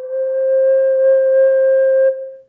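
F minor Native American flute, a Taos Pueblo–style flute by Russ Wolf, playing one long steady note: the middle note of its scale, fingered with the top three holes covered, held plain without vibrato. The note slides up slightly into pitch as it starts.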